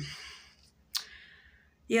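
A woman's breathy exhale fading out as she pauses between sentences, then a single sharp mouth click about a second in.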